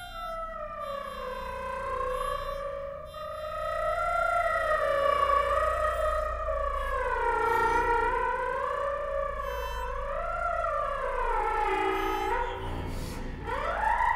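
Contemporary chamber ensemble music: a single sustained pitched tone with strong overtones that glides slowly up and down with a slight waver, then swoops sharply upward near the end, over a steady low hum.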